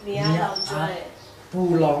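A man speaking, with a pause just after the middle. About half a second in come a couple of short high squeaks from a marker on a whiteboard.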